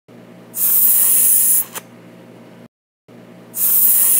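A loud hiss, like a spray, lasting about a second and cut off by a short click, heard twice with a moment of silence between. It stands for a spider's web shooting out.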